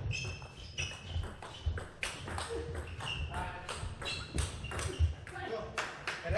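Table tennis rally: the celluloid-type plastic ball clicking off rackets and the table in quick, irregular succession, with short high squeaks of shoes on the court floor. A player's shout comes near the end as the point finishes.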